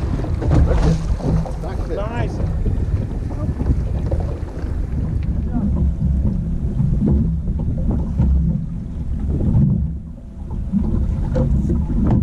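Wind buffeting the microphone in a dense low rumble, with excited voices in the first couple of seconds.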